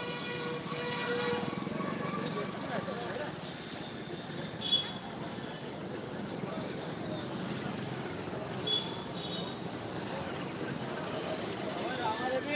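Street noise: vehicle engines running steadily under indistinct voices, with a held tone in the first second or so and a short, loud high beep about five seconds in.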